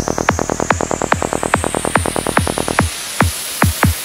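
Psytrance music: a steady four-on-the-floor kick drum at about 140 beats a minute with a rolling bassline, under a high sweep that rises throughout. About three seconds in, the bass drops out and only a few kicks remain as the sweep builds toward a break.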